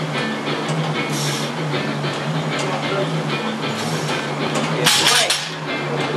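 Background music with a steady beat. About five seconds in comes a short clatter as a loaded barbell is set down on the gym floor.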